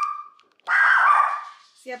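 A dog whining in two high, drawn-out whines: the first trails off falling in pitch just after the start, and the second comes about half a second later and lasts under a second.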